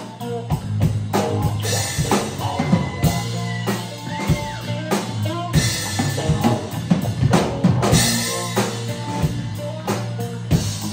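Live rock band playing an instrumental passage: drum kit with bass drum and snare hits in a steady beat, over electric guitar and bass guitar.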